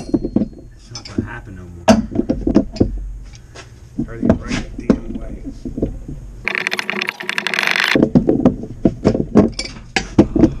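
Pipe wrenches clinking and knocking against threaded galvanized steel gas pipe and fittings as they are turned in a cramped spot, with low voices. About six and a half seconds in, a rushing noise lasts about a second and a half.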